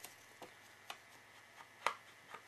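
Small ink pad dabbed along the edge of a square of patterned scrapbook paper to ink it: a series of light taps, roughly two a second, the loudest near the end.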